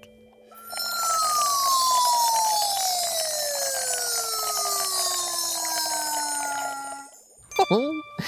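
Cartoon sound effect of milk being sucked up through a drinking straw: a long slurping hiss with a whistling tone that slides steadily down in pitch as the glass drains to the last drop. It starts about half a second in and stops suddenly about a second before the end.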